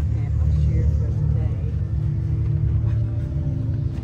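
A steady low rumble with faint background music and a murmur of distant voices.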